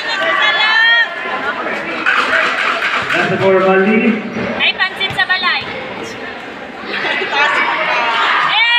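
Spectators' voices in a large covered basketball court: overlapping shouts and chatter from the crowd, with several loud calls standing out.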